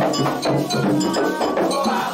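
Candomblé ritual music for Oxalá: a metal agogô bell struck in a steady rhythmic pattern over atabaque hand drums, with voices singing.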